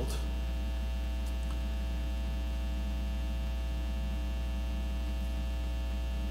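Steady electrical mains hum: a low hum with a thin buzz of higher overtones, holding level throughout.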